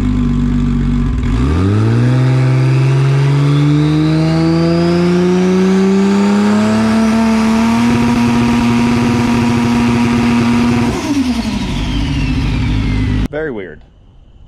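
Drag-race Camaro's engine idling, then brought up on the trans brake about a second in, its revs climbing steadily for several seconds and holding before dropping back to idle near the end. This is a test of the bump box, which fails to bump the car forward.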